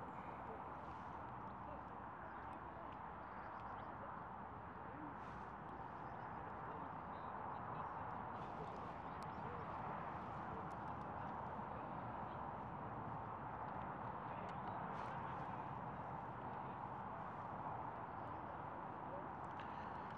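Faint, steady outdoor background noise with no clear single source, and a few faint ticks.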